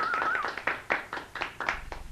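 A small group applauding, the separate hand claps distinct. It fades away toward the end.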